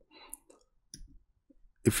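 A few faint, short clicks spread over about a second, with a soft breath-like rustle just before the first.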